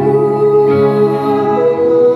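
Slow live band music with electric guitar and bowed cello; one long held note steps up in pitch near the end.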